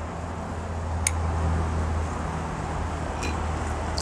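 Steady low mechanical hum with a broad background rush, easing off a little past halfway, and one faint click about a second in.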